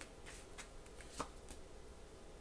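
Tarot cards being handled and shuffled: a few faint, short flicks and clicks of card on card, the loudest a little past the middle.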